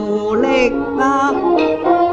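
Cantonese opera (yuequ) music: several pitched parts at once, holding and sliding between notes, with a strongly wavering vibrato line about half a second in.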